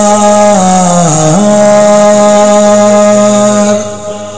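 A male reciter holding one long sung note of a Muharram noha lament. The pitch dips about a second in, then holds steady and fades near the end.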